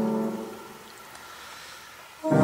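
A held chord of recorded choral singing fades away over about the first half-second, leaving a quiet pause in the music.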